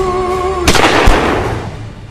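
A single loud pistol shot about two-thirds of a second in, fading over roughly a second, preceded by a held note.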